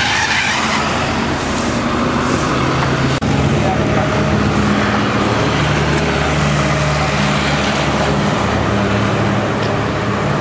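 Street traffic: a motor vehicle's engine running close by, its low hum stepping up in pitch a few seconds in, over a steady rush of passing cars.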